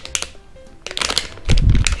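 Crinkling and crackling of a plastic-foil blind-bag packet being handled and turned over in the hands, starting about a second in, with a loud low handling bump just before the end.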